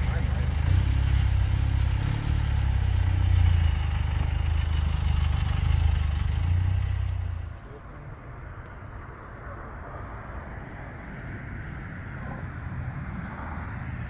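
A heavy vehicle engine running steadily with a deep hum. Its sound drops away abruptly about seven and a half seconds in, leaving a much quieter background.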